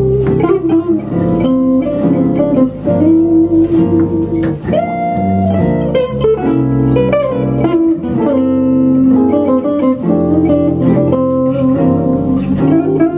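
Live gypsy jazz played on two guitars and a double bass: a quick single-note guitar melody over strummed rhythm-guitar chords and plucked bass notes.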